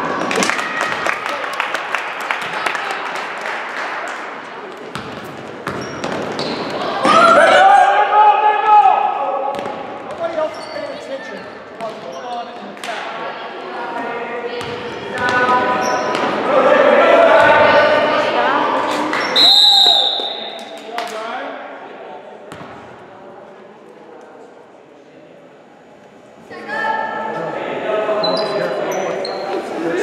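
Basketballs bouncing on a hardwood gym floor amid unclear shouting from players and spectators, echoing in the gym. A short, high referee's whistle sounds about two-thirds of the way in.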